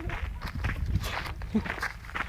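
Footsteps scuffing on a gravel-and-grass roadside verge, irregular short scrapes and rustles, with a brief vocal sound about three-quarters of the way through.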